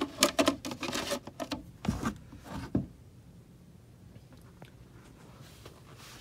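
Rapid clicks and knocks of hard plastic parts being handled as a clear plastic siphon bell is set down over its standpipe inside a plastic grow tray, lasting about three seconds.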